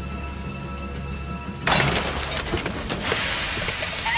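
Tense music holding a low drone stops dead about a second and a half in at a sudden loud crash as a small steam engine derails and tips over a cliff edge. A rushing hiss of noise follows.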